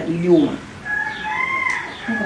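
A brief bit of speech, then a long, thin, high-pitched cry that rises and falls, meow-like.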